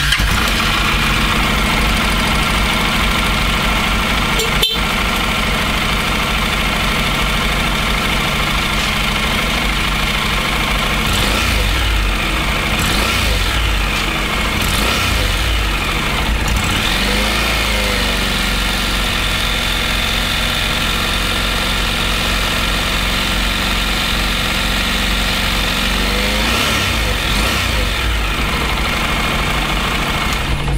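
Honda NC700S's 670 cc parallel-twin engine idling steadily.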